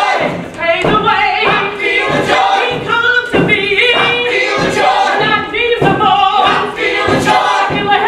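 Cast ensemble singing a musical-theatre number together over a steady beat.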